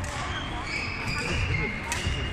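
Court shoes squeaking on a badminton court floor, several short high squeaks in a row, over background voices in the hall. A single sharp tap comes just before the end.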